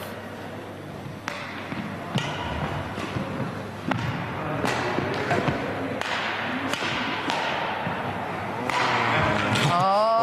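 Badminton rackets striking a shuttlecock in a rally: sharp hits roughly once a second, echoing in a large sports hall, with voices in the background.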